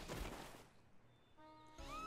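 Cartoon soundtrack: a short sound effect fading away, a moment of near silence in the middle, then faint music tones coming back near the end.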